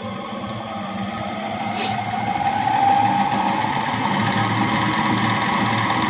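Fan running at full speed during a balancing trial run, with a 4.2 g trial weight fixed to its rotor: a steady whir with a faint whining tone that rises slightly over the first few seconds.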